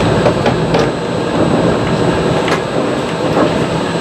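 Disneyland monorail running along its concrete beam, heard from inside the cabin: a steady rumble and rushing noise from its rubber tyres and drive, with a few faint clicks.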